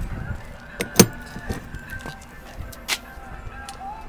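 Motorhome baggage compartment door, fiberglass ABS, being unlatched and swung open: a sharp latch click about a second in, with lighter clicks of the handle and hinges around it.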